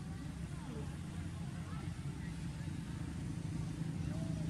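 A steady low rumble, such as a motor or traffic makes, with a few faint short chirps scattered over it.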